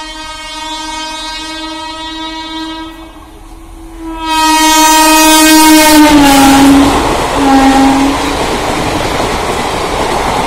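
Express train's locomotive horn sounding a long blast, then a second long blast whose pitch drops as the locomotive passes at speed, then a short lower blast. From about four seconds in, the loud rushing noise of the train going by at speed fills the rest.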